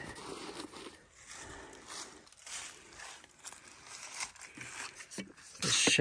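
Handling noise at a wooden pochade box: a paper towel rustling as it is pushed into the box's back pocket, with light scattered taps and scrapes. A louder scraping rustle comes just before the end as the wooden side shelf is picked up.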